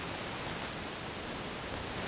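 Steady, even hiss of background noise, with no distinct event.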